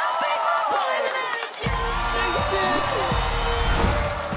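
Excited voices cheering and shouting. About a second and a half in, music with a heavy bass starts suddenly.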